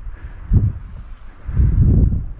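Wind buffeting the microphone in low rumbling gusts: a short gust about half a second in, then a longer, stronger one near the end.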